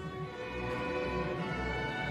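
A string orchestra playing, with violins bowing long held notes over a low bass line.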